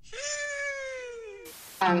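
A single long, high-pitched cry of about a second and a half that slowly falls in pitch, cut off by a short burst of hiss.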